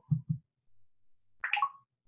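A short electronic blip from the iPad's VoiceOver screen reader about one and a half seconds in, as a double tap opens the Camera app.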